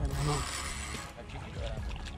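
Water splashing for about the first second as a small hooked fish thrashes at the surface close to the rod tip, over a steady low wind rumble on the microphone.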